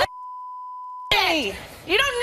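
A steady single-tone broadcast censor bleep, about a second long, with all other sound muted beneath it: a swear word being censored. Then the argument's speech resumes abruptly.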